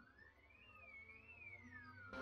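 A faint, single electronic tone from an anime opening's soundtrack glides upward, wavers up and down twice, then slides back down, with no beat or other instruments under it.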